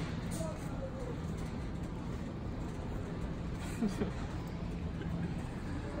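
Steady low rumble of store background noise with a faint hum, and faint voices briefly in the distance.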